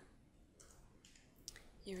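Near silence: faint room tone, with a single faint click about one and a half seconds in.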